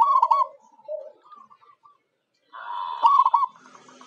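Zebra dove (perkutut) cooing: a phrase of quick, rolling coo notes at the start, fainter notes after it, then a second, louder phrase about two and a half seconds in. This is the local perkutut call used as a lure for other doves.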